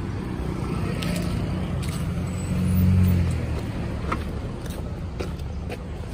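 A car drives close by on the road, its engine and tyre rumble swelling about halfway through and then easing, over steady traffic noise, with a few light ticks near the end.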